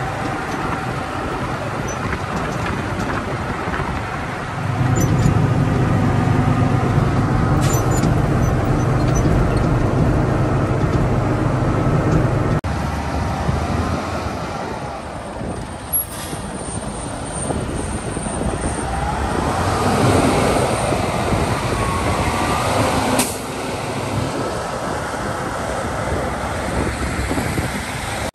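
Caterpillar motor grader's diesel engine running while it grades, loudest for several seconds in the first half, then cutting off suddenly. Later the engine note rises and falls.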